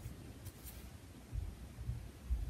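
Embroidery thread and needle being drawn through cloth stretched in a hoop, fingers rubbing the fabric with a brief scratch about half a second in, and a few low handling thumps in the second half.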